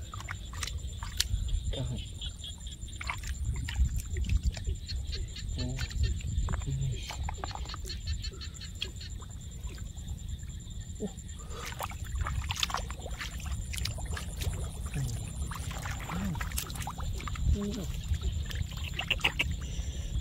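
Hands moving through shallow muddy water, with small splashes and sloshing and scattered light clicks and taps, over a steady low rumble.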